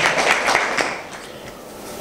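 Audience applauding briefly, fading out about a second in.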